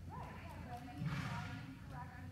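Horse sounds in an indoor riding arena, with a louder breathy burst about a second in, over faint indistinct voices.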